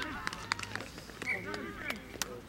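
Distant shouting voices of players and spectators on an open rugby field, with a few short, sharp clicks scattered through the first second and one near the end.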